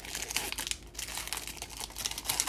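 Foil wrappers of Chronicles football card packs crinkling steadily as hands pull them open.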